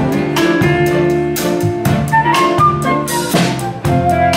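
A live band playing together: drum kit, keyboards, electric bass and electric guitar, with a melody line that steps upward around the middle.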